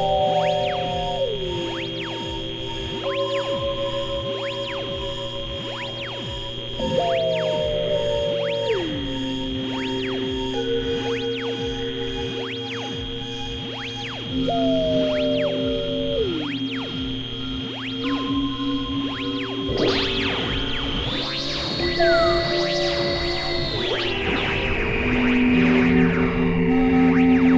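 Experimental synthesizer drone music from a Novation Supernova II and a microKorg XL: layered held tones over a steady high whine, with a note that slides down in pitch every seven seconds or so. About twenty seconds in, a brighter, noisier swell comes in and then drops lower near the end.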